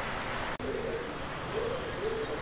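A bird's low calls, two short phrases, over a steady background hiss, broken by a sharp click about half a second in.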